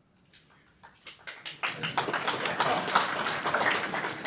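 Audience applause, starting as scattered claps and building into a dense round of clapping about a second and a half in.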